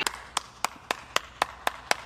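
One person clapping hands at a steady, even pace, about four sharp claps a second.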